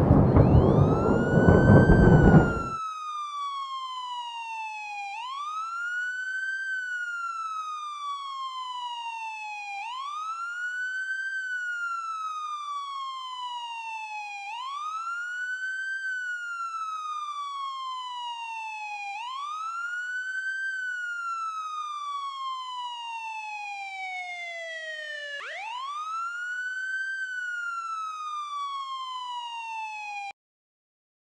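An emergency-vehicle siren wails: each cycle climbs quickly in pitch and then slides slowly down, repeating about every five seconds. It sounds over a loud burst of rumbling noise that stops abruptly about two and a half seconds in.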